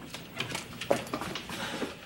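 Several short, sharp knocks and clicks at irregular spacing, the loudest about a second in.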